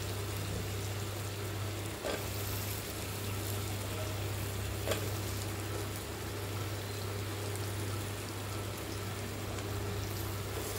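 Chopped drumsticks, onion, tomato and garlic frying in a clay pot, a steady gentle sizzle. A steel spoon knocks lightly twice, about two and five seconds in, over a steady low hum.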